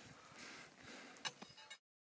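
Near silence: a faint outdoor hiss with a few soft clicks just after a second in, cutting to total silence near the end.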